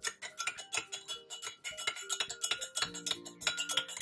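Metal teaspoon stirring in a glass mug, clinking against the glass over and over, several short ringing clinks a second.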